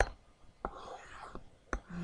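A sharp click, then a short pitchless whisper lasting under a second, and another sharp click near the end.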